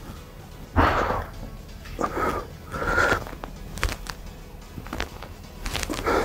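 A person exercising on a dip bar station, breathing out hard in short noisy puffs, three within the first half, followed by a few faint clicks.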